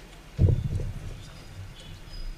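A single sudden low thump about half a second in, followed by a few softer low knocks.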